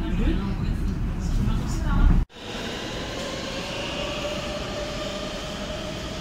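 Passenger train running, heard from inside the carriage as a heavy low rumble, with voices over it. It cuts off abruptly a little over two seconds in, and a steadier, quieter hum with a faint high whine follows.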